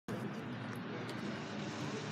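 Steady background hum of street traffic, an even noise with no distinct events.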